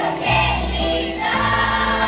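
A children's choir and a male singer singing a Greek song, accompanied by bouzoukis and acoustic guitar.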